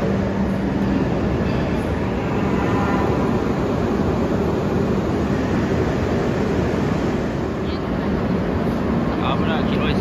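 Steady noise of an elevated Shinkansen station platform with a low hum, and brief voices near the end.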